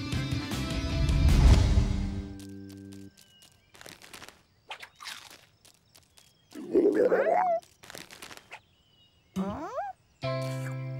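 A cartoon music cue that stops about three seconds in, then a few light clicks. An animated kitten gives a loud cry with swooping pitch near the middle, and a short rising cry just before the end.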